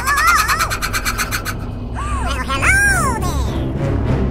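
Bats fluttering and squeaking: a rapid flutter of wings with high squeaks for the first second and a half, then a few rising-and-falling shrieks about halfway through, over background music.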